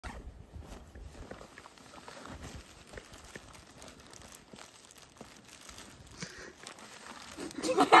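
Faint rustling and crinkling of hands rummaging in a backpack and handling a plastic zip-top sandwich bag. Near the end a woman's voice breaks in, laughing.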